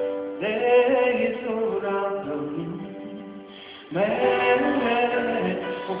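Live amplified music: a sung vocal line with instrumental accompaniment, held notes fading and then a new, louder phrase coming in about four seconds in, heard from the audience in a large hall.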